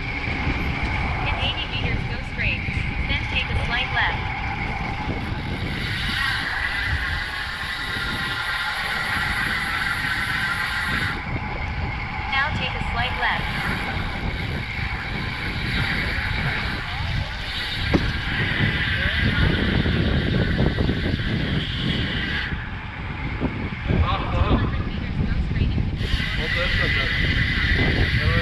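Wind rumbling on a bike-mounted camera's microphone while cycling, with road traffic mixed in.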